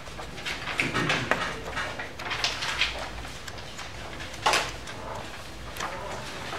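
Sheets of animation paper rustling as a stack of drawings is lifted and flipped by hand, in a string of short bursts with a sharper one about four and a half seconds in.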